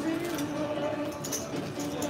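Card-room background: a steady held tone over a low murmur of room noise, with a few faint light clicks of casino chips and cards being handled on the felt table.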